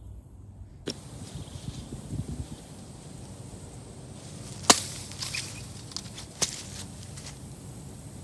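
Homemade steel machete, cut from a concrete-cutting saw blade, chopping. There are a few sharp strikes, the loudest a little past halfway as the blade slices through a pineapple on a wooden post.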